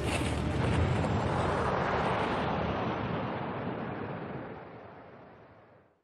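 Heavy breaking surf and churning whitewash: a dense rushing noise that fades away over the last three seconds to silence.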